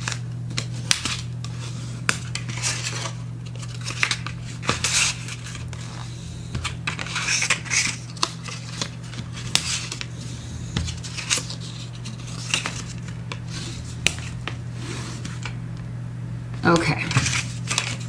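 Bone folder rubbing along folds in cardstock to crease them firmly, in short scraping strokes with scattered sharp clicks and taps of the folder and card against the cutting mat.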